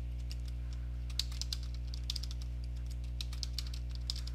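Computer keyboard keys clicking irregularly as a password is typed, over a steady low hum.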